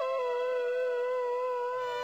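Music: one long held, theremin-like synthesizer note that dips in pitch at the start and then holds with a slight waver. A low bass note comes in near the end.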